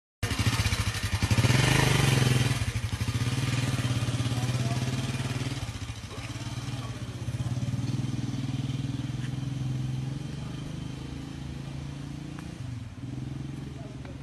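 A small engine running steadily with a low, even drone, loudest for the first two or three seconds and then gradually easing off.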